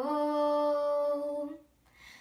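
A girl singing a cappella, holding one long note that lifts slightly in pitch just before it stops, about a second and a half in, followed by a brief pause for breath. The voice carries the echo of a small tiled room.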